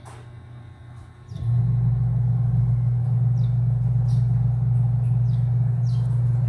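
A loud, steady low mechanical hum, like a motor or engine running, starts suddenly about a second and a half in and holds unchanged, with faint short high chirps now and then over it.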